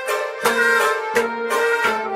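Traditional Kashmiri Sufi ensemble music: a harmonium holding steady chords while a pot drum (noot) is struck by hand in an even beat, about three strikes in two seconds.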